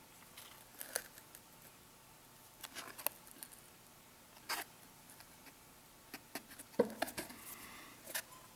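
Quiet handling sounds: fingers pressing a small metal motor with a wooden wheel onto a cardboard base, giving a few soft taps and rustles, at about one, three, four and a half and seven seconds in.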